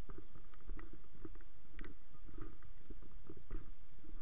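Handling noise from a camera carried by a walking hiker: irregular muffled knocks and clicks, likely footsteps and the camera rubbing, over a steady low rumble.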